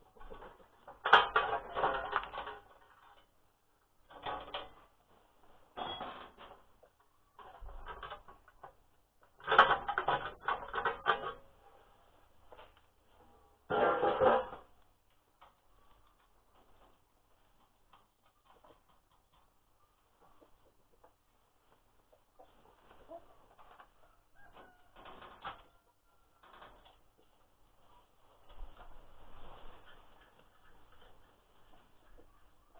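Irregular clinking and clattering of metal parts and hand tools as the protective guard over the walk-behind tractor's belt drive is worked loose, in several short bursts, loudest in the first half and fainter and sparser after about 15 seconds.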